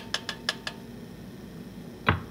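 A metal spoon clinking against the side of a stainless steel saucepan while stirring soaked rose petals: about five quick, lightly ringing clinks in the first second.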